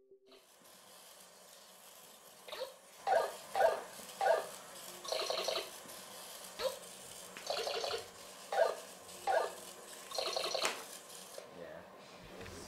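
Felt-tip marker squeaking across paper in a series of short strokes, some in quick runs of two or three.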